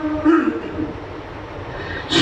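Break between phrases of an unaccompanied Pashto naat: the male reciter's held note ends, a short vocal sound follows, then a low rumbling, hissing background through the sound system until the next phrase.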